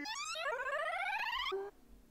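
Edited cartoon audio from a YouTube Poop: a warbling pitch with a fast wobble glides steadily upward for about a second and a half, then cuts off suddenly, followed by a short low tone.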